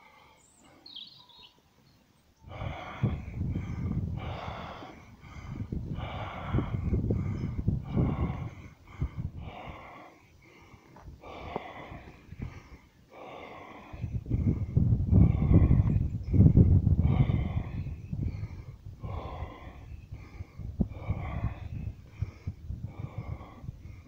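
Heavy breathing close to the microphone, starting a couple of seconds in as a long run of quick, regular breaths about one a second, louder in the second half.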